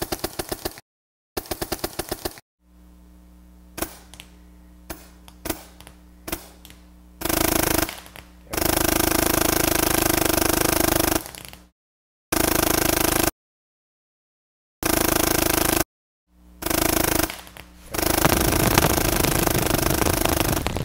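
RT Automag paintball marker with an X-valve firing. It starts with two short strings of separate, evenly spaced shots, then, on a Ninja SHP 1100 PSI regulator, it fires long full-auto strings in which the shots run together, the reactive trigger reaching about 26 balls a second. In between there is a steady low hum with a few scattered clicks.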